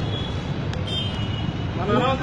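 Street traffic noise, with the engine of a large vehicle such as a bus running close by; men's voices return near the end.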